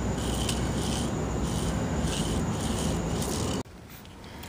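Toy hula hoop spinning around a child's waist, rattling in a pulse a little under once a second, over a low steady rumble. It cuts off suddenly near the end.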